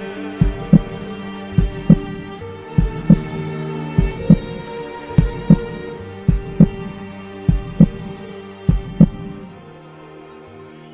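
Music with slow double thumps like a heartbeat, one pair about every 1.2 seconds, over sustained low tones. The thumps stop near the end, leaving only the tones.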